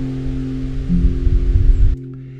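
Acoustic guitar playing alone between sung lines, a chord held and ringing with a brief added note about a second in. A low rumble sits under it in the second half.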